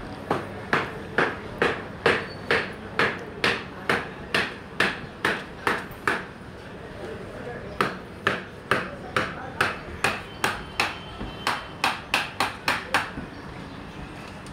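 Sharp, evenly spaced knocks like hammer blows, about two a second. They stop for a second and a half after about six seconds, then start again and quicken slightly near the end.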